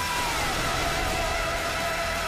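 Opening theme music: a sustained, wavering melody line whose held note slides down in pitch about half a second in, over a steady low bass.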